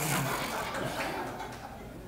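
A short low chuckle right at the start, then a soft room murmur that fades away.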